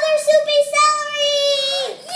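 A young girl's voice singing one long held note, nearly steady in pitch, that fades out just before the end.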